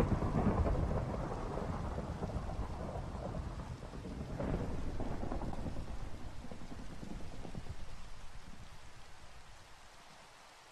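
Rain falling steadily with rolling thunder. There is a rumble at the start and another swell about four and a half seconds in, and the whole storm fades out near the end.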